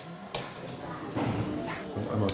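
Café counter sounds: a single sharp clack of crockery about a third of a second in, then low, indistinct voices.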